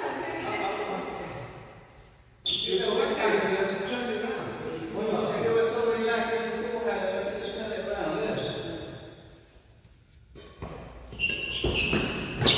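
People talking in a large sports hall between badminton points, the voices carrying in the room. Near the end come a few sharp smacks of rackets hitting the shuttlecock as a rally starts.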